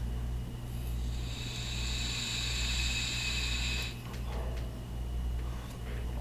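A long draw on a Horizon Tech Arctic sub-ohm tank: a steady hiss of air pulled through the tank's airflow while the coil fires, lasting about three seconds, then a softer breathy exhale of the vapor.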